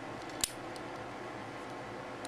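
Plastic parts of a Transformers action figure being handled, with one sharp click about half a second in and a few faint ticks, over a steady low hiss.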